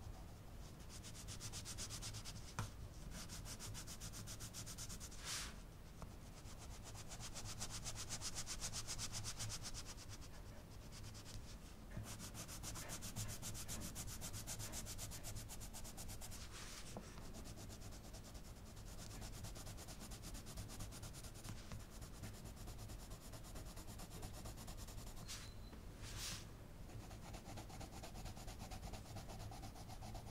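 An Arteza coloured pencil shading on paper: a continuous, quiet scratching of quick back-and-forth strokes as the green pencil layers colour into a background, with a few brief clicks now and then.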